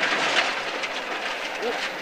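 Inside a Ford Escort Mk2 rally car at speed: its Pinto 8-valve engine and the road noise make a steady, rushing din through the cabin.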